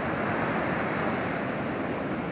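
Ocean surf breaking and washing up a sandy beach: a steady rush of waves.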